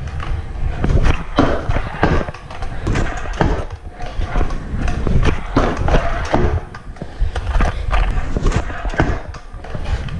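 Stunt scooter wheels rolling over a concrete floor with a steady rumble, broken by many sharp clacks and thuds of the wheels and deck knocking and landing.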